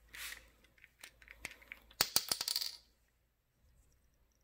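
Small plastic cap of a peppermint essential oil bottle being twisted open and set down on a granite countertop: a few light clicks, then a quick clattering run of sharp clicks about two seconds in.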